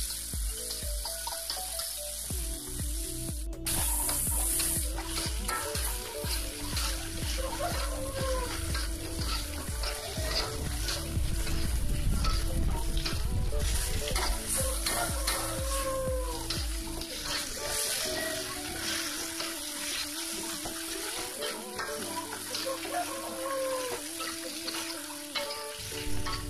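Green chillies, garlic and ground spice paste sizzling in hot oil in a wok while being stir-fried with a spatula. The sizzle is steady, with frequent short scrapes and knocks from the stirring.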